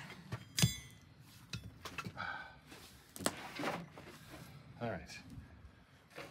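Knocks and clatter from a white laminated wooden entertainment-unit cabinet being worked on and tipped onto its side. About half a second in there is a sharp metallic clink with a brief ring, and a second knock comes about three seconds in. Short muttered vocal sounds come in between.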